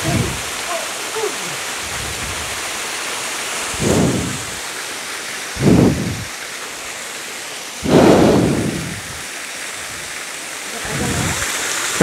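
Steady rushing hiss of a small waterfall, broken by four loud low rumbling bumps on the microphone about four, six, eight and eleven seconds in, the one near eight seconds the loudest and longest.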